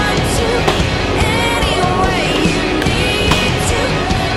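Music with a singing voice over a skateboard rolling on concrete, with two sharp clacks, one under a second in and one near the end.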